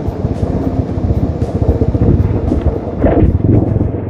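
A TVS Apache motorcycle running at road speed, with the engine and wind on the helmet microphone, under background music.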